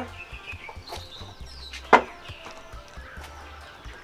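Faint background music with one short, sharp sound about halfway through, and a few faint high calls in the first second.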